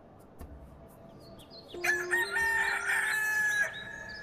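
A rooster crowing once, a call about two seconds long that begins a little under two seconds in, after a quiet start.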